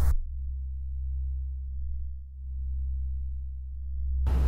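Low, steady synthesizer drone of a few deep sustained tones, dipping briefly in level a little past halfway.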